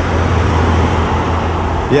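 A loud, steady rushing noise with a low hum beneath it, like static, which stops as a man's voice comes in at the very end.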